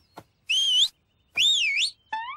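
Two whistled notes, each wavering up and down in pitch: a short one about half a second in, and a longer one with a deeper dip about a second later.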